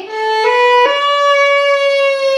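Violin bowed: a note that steps up in pitch twice within the first second, then settles on a single steady held note.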